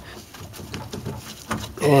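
A few faint, scattered metallic clicks and taps from hand tools and loose suspension hardware being handled.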